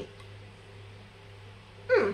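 Mostly quiet room with a steady low hum; near the end a woman's voice gives one short vocal sound that falls in pitch, a brief 'mm' as she smells the bottle.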